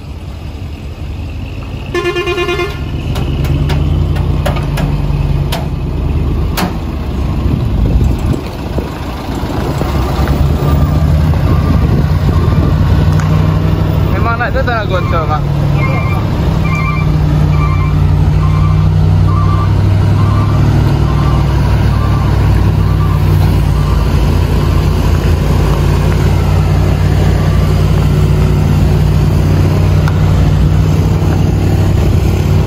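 Heavy diesel truck engines running steadily under load as a flatbed carrier tows a dump truck that failed to climb the grade, the drone growing louder about ten seconds in. A short horn blast sounds about two seconds in, and a short beep repeats about twice a second for several seconds in the middle.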